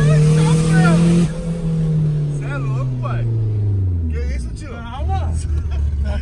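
Engine of a turbocharged VW Gol running hard with a loud hiss, heard from inside the cabin; about a second in the hiss cuts off and the engine note falls steadily as the throttle is lifted and the car slows, then settles to a low steady note.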